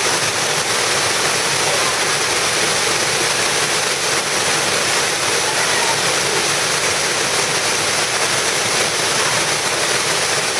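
A waterfall of about 100 ft pouring steadily into its plunge pool: a loud, even rush of falling water that never lets up.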